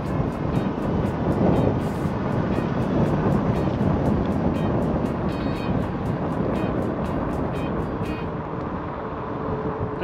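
Mobility scooter rolling along a concrete road: a steady rumble of wheel and wind noise on the microphone, with a light regular ticking a few times a second that fades out near the end.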